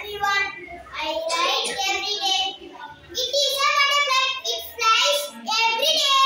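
A young child's high voice in a sing-song recitation, with some syllables held.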